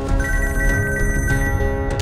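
Mobile phone ringing with a musical ringtone, a high held tone over the tune.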